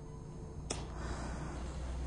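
A single sharp click about two-thirds of a second in, over a faint low hum and soft hiss.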